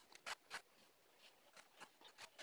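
Faint, short scratches of a felt-tip marker drawn over corrugated cardboard along a kite spar, a few strokes spread over an otherwise near-silent moment.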